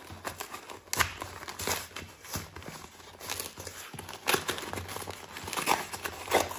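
Padded paper mailing envelope being slit with a folding knife and torn open by hand, crinkling and tearing in irregular bursts about once a second.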